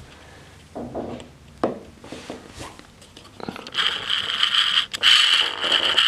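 Handling noise from a hand-held camera being moved and set low on a tabletop: a few light knocks, then, over the last two seconds or so, a loud scraping, rubbing noise.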